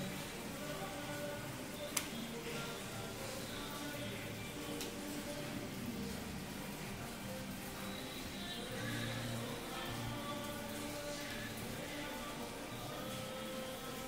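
Faint background music with held notes, and a single sharp click about two seconds in.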